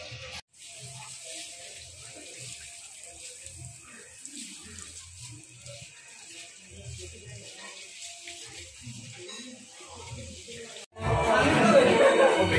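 Faint, indistinct background voices and music under a steady hiss. About eleven seconds in, after a brief drop, loud music suddenly takes over.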